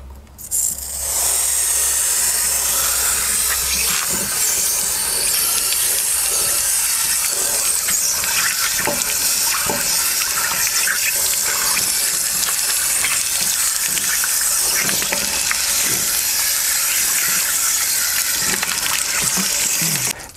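Water from a flushing wand rushing around inside an RV water heater tank and pouring out of the drain opening, a steady loud hiss that starts about a second in, as the wand is worked back and forth to flush out sediment.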